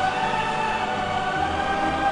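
Orchestra and choir performing, holding sustained chords.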